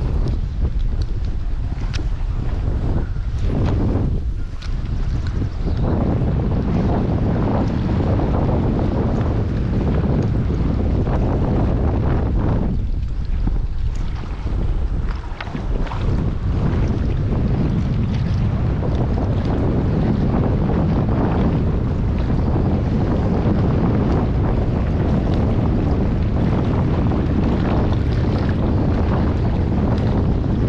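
Wind buffeting a camera microphone, a steady loud low rumble with scattered faint clicks and knocks.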